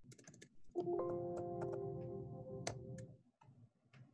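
Computer keyboard typing in a quick run of clicks, then a held chord of several steady electronic tones for about two and a half seconds, with a few more clicks over it.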